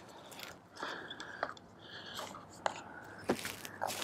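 A lithium motorcycle battery handled in and out of a tight plastic battery box: scattered small clicks, knocks and short scrapes of plastic against plastic as it is pressed in and lifted back out.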